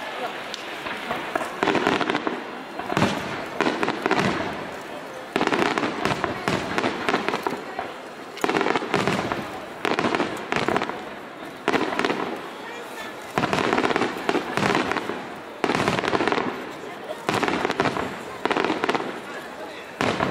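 Fireworks barrage: aerial shells bursting one after another, a sharp bang about every one to two seconds, each fading over about a second.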